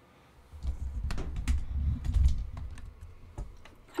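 A white thread spool being handled on a sewing machine's spool pin: irregular light clicks and knocks over low bumps, starting about half a second in and dying away near the end.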